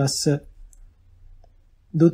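A man's voice reading a Pali passage breaks off at the start of a phrase. A pause of about a second and a half follows, holding only faint room tone and a small click, and then the voice resumes near the end.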